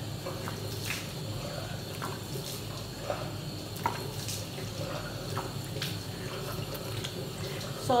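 Water running from a tap into a bathroom sink, with irregular splashes as it is scooped onto the face.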